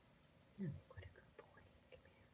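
Near silence: a softly spoken 'yeah' about half a second in, followed by a few faint, short ticks.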